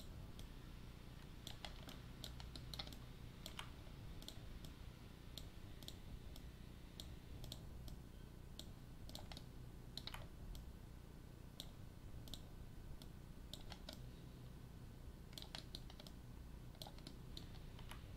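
Faint, irregular clicks of a computer mouse and keyboard, a few at a time with gaps between, over a low steady hum.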